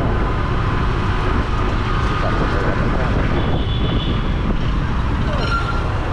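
Motorcycle running while riding along a street, a steady low rumble of engine and wind on the mic.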